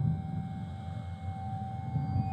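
Dark ambient film score: a low rumbling drone with one high tone held steadily above it.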